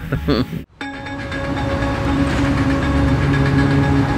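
A steady drone of several held tones over a hiss, swelling in level over the first couple of seconds after a brief gap.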